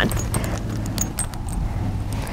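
Light, scattered metallic clinks of a horse's lead chain and halter hardware jingling as the horse moves its head, over a steady low hum.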